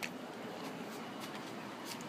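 Steady, quiet background noise with two faint clicks, one at the very start and one near the end.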